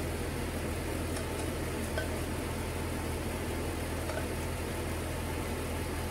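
A steady low hum and hiss of running kitchen equipment, with a few faint light clinks as a plastic spatula scrapes thick white sauce out of a stainless steel saucepan into a frying pan.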